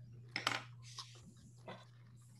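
A few faint clicks and light taps of drawing tools (pencil, ruler, scissors) being handled on a tabletop, the clearest about half a second in, over a steady low hum.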